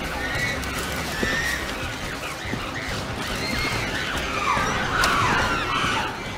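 Apes screaming in a commotion: overlapping high, wavering calls that grow louder and denser about four and a half seconds in.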